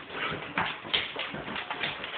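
Belgian Malinois and German Shepherd dogs playing rough: paws and claws scrabbling and knocking on a wood floor and furniture in a quick, irregular string of short knocks, with dog whimpering mixed in.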